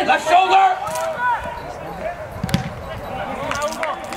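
A soccer ball being kicked on an outdoor pitch: a few short sharp thuds, one about a second in and a quick cluster near the end, with shouting voices across the field at the start.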